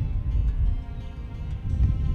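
Background music fading out over strong, gusting wind noise on the microphone, heard as an uneven low rumble.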